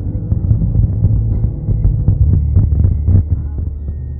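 Low, steady rumble and hum of a car driving on a highway, heard from inside the cabin, with irregular short thumps.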